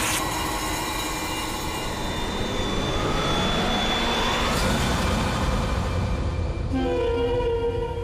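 Dramatic background score of sustained synth drone tones, with a slow rising sweep in the middle and a new set of held low notes entering near the end.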